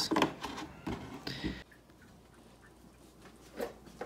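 Cardboard donut box being handled and pushed shut: a few taps and rustles that cut off suddenly about one and a half seconds in, leaving faint room tone.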